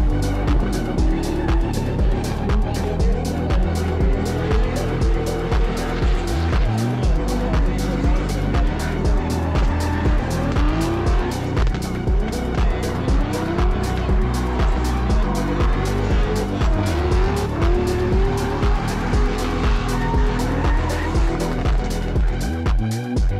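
Two drift cars in a tandem run, their engines revving up and down at high revs and their tyres squealing as they slide, under electronic music with a steady beat.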